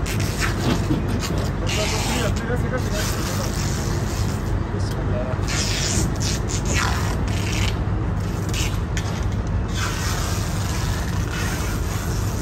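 Metal lock rods and handles on a truck trailer's rear doors clanking and scraping as they are unlatched and the doors swung open, over a steady low engine hum.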